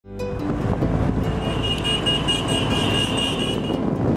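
A group of motorcycles riding together in a convoy, their engines making a dense low rumble. A high steady tone sounds over them from just over a second in until near the end.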